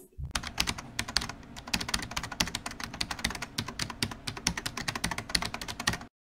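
Fast typing on a computer keyboard: a quick, steady run of key clicks that stops abruptly at the end.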